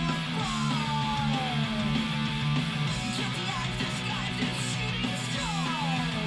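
Punk-rock song with electric guitar, with a few long notes sliding downward in pitch.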